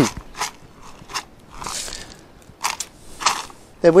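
Potting grit being tipped into the bottom of a cut-down milk carton: a few short crunching clicks and a brief hiss of pouring grit, after a cough at the start.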